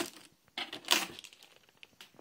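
Clear plastic bag crinkling as a boxed toy inside it is handled, in a few rustling bursts, the loudest about a second in.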